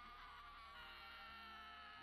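Faint, high-pitched held shout of an anime character yelling "Doflamingo!!", one long steady cry.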